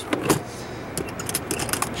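Black plastic tackle box lid shutting with a knock, followed by a run of small clicks and rattles as the box's metal latch is worked closed.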